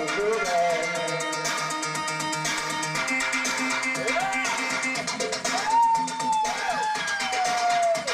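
Live synthpunk music: held synthesizer tones over a steady electronic beat, with sliding, wailing pitches in the second half that fit a voice singing into the microphone.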